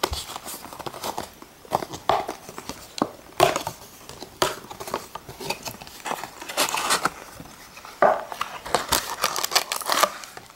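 Foil Pokémon card booster packs and a cardboard booster box being handled: the box lid is opened and the packs pulled out, giving irregular crinkling and rustling with a few sharper crackles at uneven moments.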